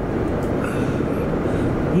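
Steady road noise inside a moving car's cabin: an even rumble of tyres and engine.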